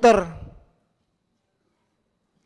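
A man's voice ends a phrase, falling in pitch and fading out within about half a second, then dead silence.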